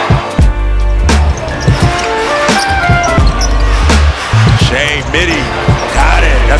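Background music with heavy bass notes over basketball game sound: a basketball bouncing on a hardwood court, heard as irregular sharp knocks.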